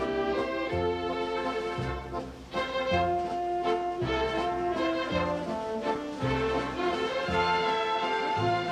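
Orchestral music, held chords over a bass note that sounds about once a second, with a short dip in loudness near the middle.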